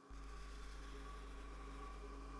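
A steady, faint low electrical hum with a light hiss, cutting in just after the start and holding unchanged.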